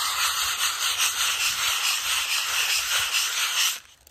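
Sandpaper rubbed by hand back and forth over a wall coated with cured acrylic wall putty, giving a steady, fast, scratchy rasp that stops shortly before the end. The putty has set fairly hard to sand.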